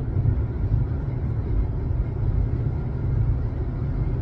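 A car's road and engine noise heard from inside the cabin while driving at highway speed: a steady low rumble.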